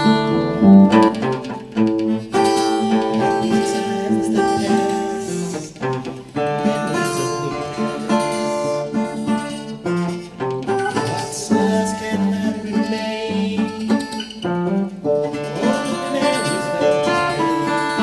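Acoustic guitar playing an instrumental passage with no singing, picked and strummed notes ringing over changing chords.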